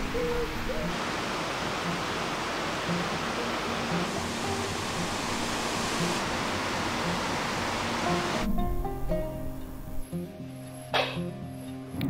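Steady rushing of water pouring over a small river weir, under soft background music. The rushing stops suddenly about eight and a half seconds in, leaving the music alone.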